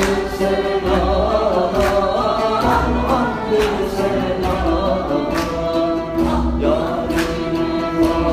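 Men's voices singing a Sufi devotional hymn, accompanied by an oud and a hand drum. The drum is struck about every two seconds.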